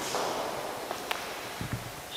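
Camera handling noise in a large echoing stone interior: a soft rustle at first, then a couple of light clicks and a few low thuds near the end.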